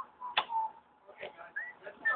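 A single sharp knock about half a second in, from the ball in play, with faint distant calls from the field.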